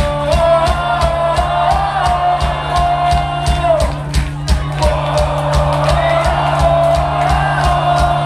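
Punk rock band playing live, with drums keeping a steady beat under bass and electric guitar, and a sung vocal line carrying the melody.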